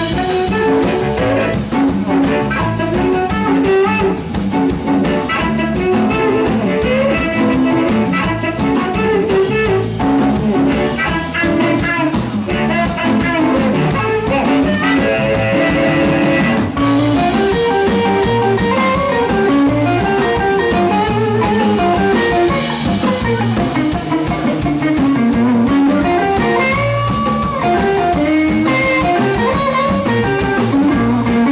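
Live electric blues band playing: a harmonica cupped against a hand-held microphone plays lead lines over electric guitar, electric bass and a drum kit.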